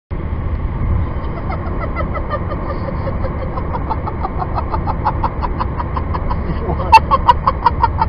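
Steady low rumble of a moving vehicle, with an even run of short pitched notes, about four or five a second, that grows louder toward the end. A single sharp click comes about seven seconds in.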